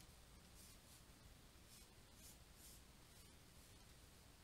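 Near silence, with faint, short scratching strokes of a stylus drawing on a tablet.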